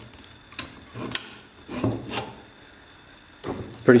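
A camera's base plate sliding out of a quick-release adapter on a shoulder rig: two sharp clicks about half a second and a second in, with scraping and rubbing of the plate as it comes free, then the camera handled and set down.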